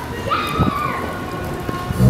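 Open-air crowd ambience: a noisy crackling haze with scattered small knocks and rustles, and a brief high call that falls in pitch about half a second in.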